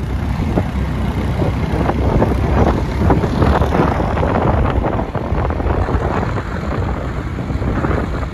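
Loud wind buffeting the microphone of a phone filming from a moving motorbike, an uneven rushing flutter over the low rumble of the ride.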